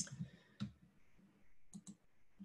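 Computer mouse clicking: a sharp click at the start, another a little after half a second in, then two quick clicks near the end.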